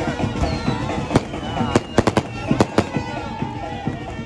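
Firecrackers going off: about seven sharp bangs in quick succession, between one and three seconds in, over band music and crowd voices.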